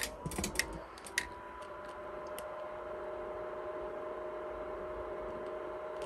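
Creality Ender 3 V3 SE 3D printer just switched on: a few light clicks in the first second, then its cooling fans start and run with a steady hum.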